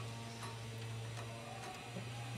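Junghans pendulum wall clock ticking softly over a steady low hum.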